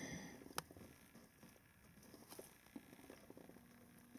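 Near silence: faint room tone, with one soft click about half a second in.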